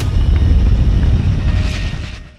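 A loud, deep rumble with no clear pitch, a dramatic soundtrack sound effect. A hiss swells over it near the end as it begins to fade.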